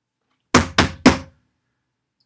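Three quick, loud knocks, about a quarter second apart.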